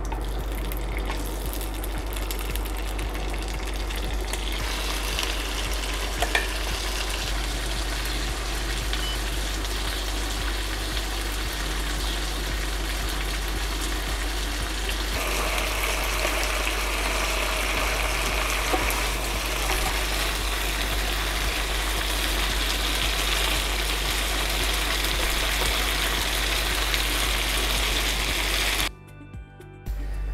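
Peanut-sauce-marinated chicken satay skewers frying at medium heat in peanut oil in a grill pan: a steady sizzle that grows louder about halfway through, once the pan is full, with a few light clicks of tongs. The sizzle cuts off abruptly near the end.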